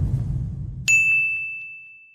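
A low rumbling swell fading away, then about a second in a single bright bell-like ding that rings on and slowly fades: a logo-reveal chime sound effect.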